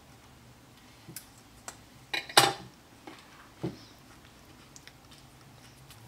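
Handling noises of paper crafting: a handful of short clicks and taps as small card pieces and a metal-tipped piercing tool are handled on a cutting mat, the loudest about two and a half seconds in.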